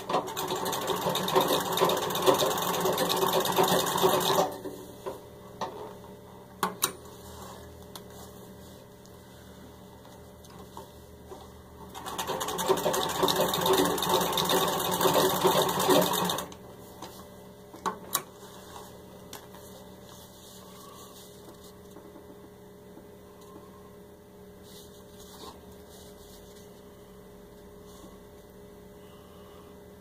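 Serviced 1910 Singer 66 treadle sewing machine running at speed and stitching through six layers of denim, in two runs of about four seconds each. Between the runs it is quieter, with a few single clicks.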